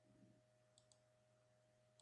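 Near silence with a faint steady hum, broken by faint computer mouse clicks: two close together a little under a second in and one more at the very end, as the screen recorder's menu is opened to stop the recording.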